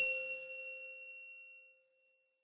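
Logo-sting chime sound effect: one bright bell-like strike that rings on and fades away over about two seconds.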